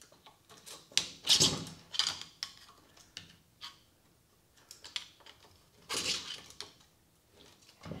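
Rusted chain seized in the bar of an old Husqvarna 65 chainsaw being worked loose by hand: irregular metallic clicks and rattles of the chain links against the bar, with a few louder knocks and quiet gaps between. The chain is seized from years of sitting unused.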